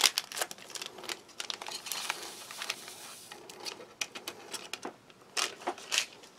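A foil sachet of drinking-chocolate powder crinkling and rustling as it is cut open and emptied into a mug, with scattered small clicks and taps and a short hiss about two seconds in.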